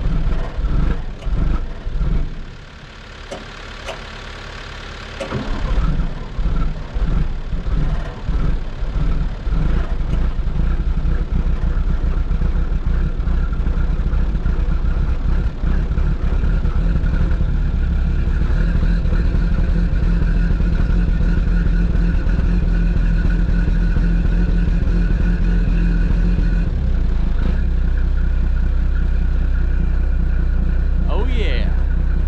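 Diesel dump truck engine on a cold start, warming up. It runs unevenly, drops away for a few seconds about two seconds in, picks up again and runs roughly, then settles into a steady fast idle.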